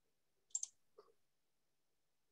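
Near silence broken by a quick double click about half a second in and a single fainter click at about one second.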